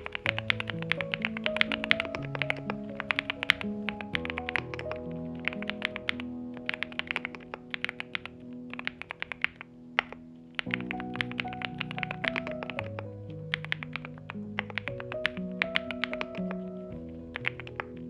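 Steady typing on a NuPhy Gem80 mechanical keyboard with NuPhy Mint switches, FR4 plate in silicone sock gasket mount and double-shot PBT mSA keycaps: a fast, dense run of keystroke clicks, over background music.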